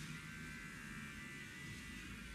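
Faint steady hum with a thin, high, even buzz over it.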